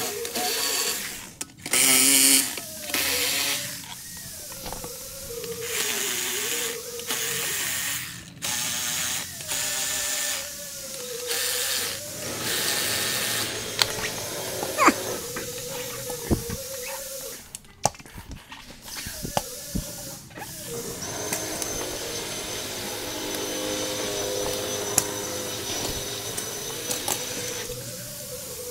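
Power drill running in several short bursts, backing out the bolts of a wheel fitment tool's sidewall clamps, with background music.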